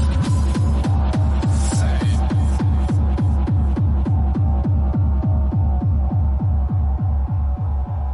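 Fast tekno music: a steady kick drum at about three beats a second, each kick a deep thud that drops in pitch, under a held synth tone. Hi-hats and a high sweep drop out about three seconds in, leaving the kick and synth, and the track starts to fade near the end.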